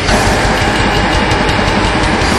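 Black metal recording: heavily distorted guitars over fast, dense drumming, with the sound thickening as a new section comes in right at the start.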